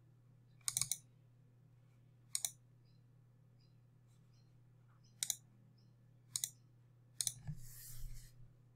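Computer mouse clicks in five separate bursts, some as quick double clicks, over a faint steady hum, with a short burst of noise near the end.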